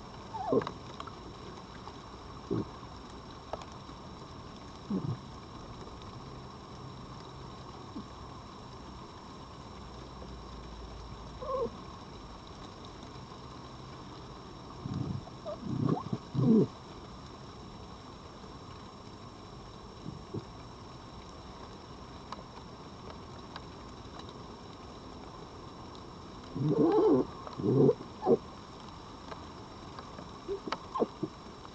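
Red foxes making short vocal sounds while feeding side by side at the food plates. Single brief calls come every few seconds, then a cluster about halfway through and a louder cluster near the end.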